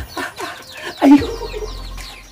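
Chickens clucking, with one louder cluck about a second in, over short high chirps from small birds.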